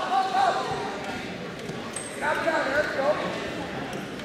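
People shouting across a gymnasium, twice, over the echoing room noise, with dull thuds of feet and bodies on the wrestling mat.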